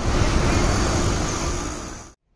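Road traffic on a wet road heard from a moving two-wheeler: a steady hiss of tyres on water mixed with engine noise, tapering off near the end.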